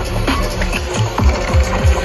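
Electronic bass music from a live DJ set played loud over a festival sound system: a run of deep bass hits that drop in pitch, coming faster toward the end.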